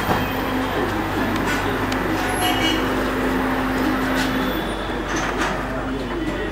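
Busy outdoor street noise: a steady wash of traffic and people's voices, with a low steady hum through most of the first four seconds.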